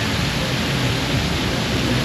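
Artificial rock waterfall splashing steadily into its pool.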